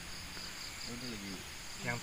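Insects trilling steadily at a high pitch, with a man's brief low murmur about a second in.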